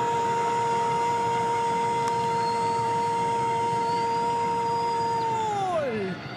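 A football commentator's long held goal cry, "gooool", on one steady note for about five seconds that slides down and trails off near the end, calling a goal just scored.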